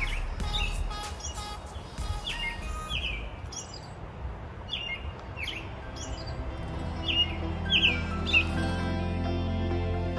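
Small songbirds chirping: a series of short calls that drop in pitch, repeated every half second or so, over soft background music that swells near the end.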